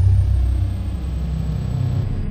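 Deep, steady bass rumble of a logo-animation sound effect, loud and low, starting abruptly.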